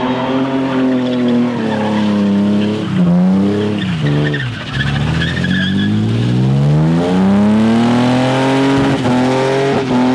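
A car engine held at high revs during spinning. Its pitch falls sharply about four and a half seconds in, then climbs steadily for a few seconds and is held high again, with some tyre squeal.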